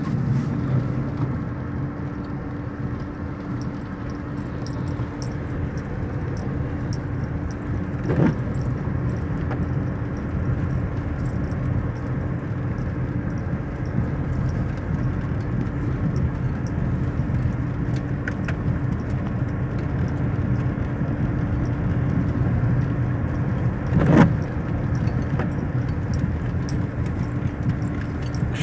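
Steady car engine and road noise heard from inside the moving car's cabin, a low even drone, with a brief louder sound about eight seconds in and another about 24 seconds in.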